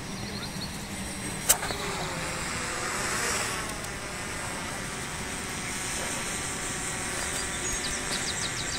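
Steady outdoor background noise that swells about three seconds in and eases off, with one sharp click about a second and a half in.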